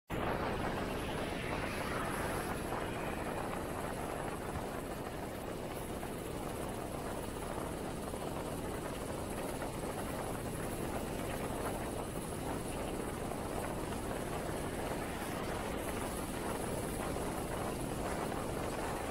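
Steady rush of road and wind noise heard from on board a moving vehicle, even in level throughout.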